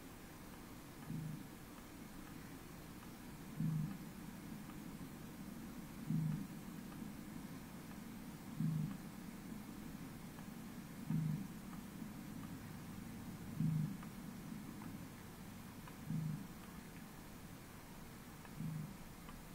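A short, low-pitched sound from a home video recording, played on a loop so that it repeats about every two and a half seconds over a steady low background. An EQ cuts away everything but a narrow low band to isolate it. The sound is unexplained; a duck or the household dog are the guesses raised.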